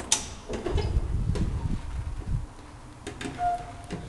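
Unilift traction elevator's mechanism clicking and thudding: a sharp click at the start, low rumbling thumps over the next couple of seconds, more clicks about three seconds in, then a short beep.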